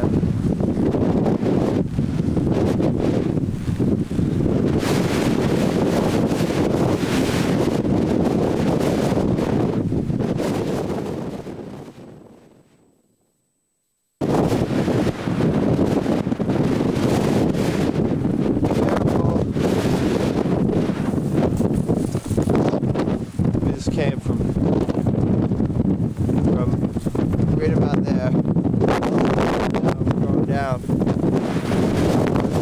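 Strong wind blowing across the camcorder's microphone, a loud, dense rushing. About ten seconds in it fades away to a second or two of silence, then cuts back in abruptly.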